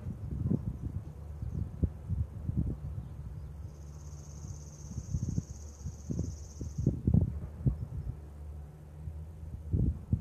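Wind buffeting the microphone in uneven gusts over a steady low hum. In the middle, a high, even trill sounds for about three seconds.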